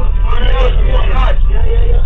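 Indistinct voices talking over the steady low rumble of a bus engine idling.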